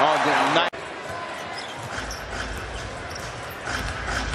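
Arena crowd noise with a basketball being dribbled on the hardwood court. A louder stretch of commentator voice and crowd cuts off suddenly under a second in, giving way to steadier, quieter crowd murmur.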